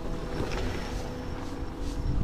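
A car passing close by on a wet road: tyre hiss on wet tarmac with a low rumble, mixed with wind noise on the microphone.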